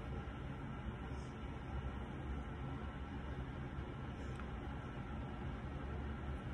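Steady low hum with a faint hiss, room noise like a running fan or ventilation.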